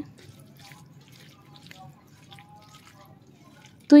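Faint wet squelching and light clicking of a hand mixing small fish coated in spice paste and oil in a steel plate.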